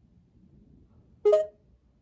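Near silence, then a little past the middle a single short electronic chime with a sharp start and a couple of steady notes that quickly fade. It is the voice-call app's cue that it has stopped listening and the AI is thinking.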